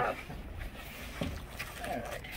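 Quiet handling of cardboard shipping boxes as scissors are run along the packing tape, with one soft knock about a second in.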